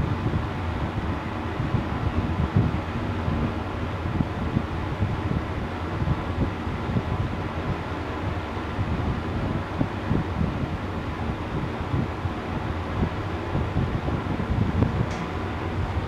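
1978 Hitachi Buil-Ace P rope-traction elevator car travelling upward: a steady low rumble of the ride. A few clicks come near the end as the car nears its floor.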